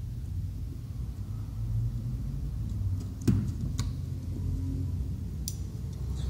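A steady low rumble, with a few light clicks from a small Phillips screwdriver working the screws out of a laptop hard drive's metal mounting bracket; the loudest click comes about three seconds in.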